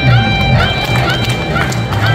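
Instrumental backing track of a song playing over loudspeakers in a large hall: the opening of the accompaniment, with a steady bass line and held high notes that repeat.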